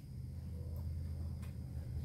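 Quiet room tone: a steady low hum, with a faint tick and then a sharper click about a second and a half in.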